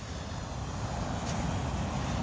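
Steady low rushing noise of ocean surf, growing slowly a little louder.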